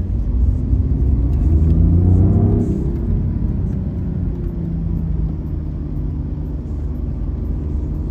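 BMW i8 accelerating, heard from inside the cabin: a low rumble with an engine note that rises for about two and a half seconds, then settles to a steady cruise.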